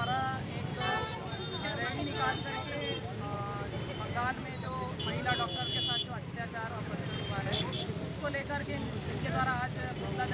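A woman talking over steady road traffic noise from a busy street junction.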